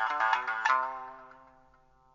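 Background music: a quick run of bright notes that stops about two-thirds of a second in. The last chord rings on and fades to near silence.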